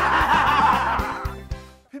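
Hearty laughter over background music with a steady beat; both fade out near the end.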